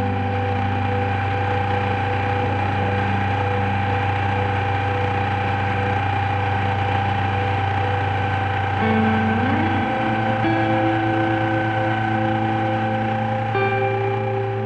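Small outboard motor running steadily, pushing an inflatable boat along, under soft sustained ambient background music whose low notes change about ten seconds in.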